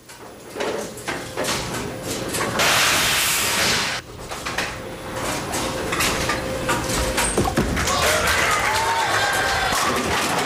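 Bowling alley sounds: pins clattering, then a bowling ball rolling down the lane and crashing into the pins near the end for a strike.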